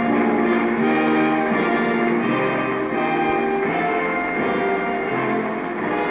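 A stage band playing music, a melody of held notes that change about once a second.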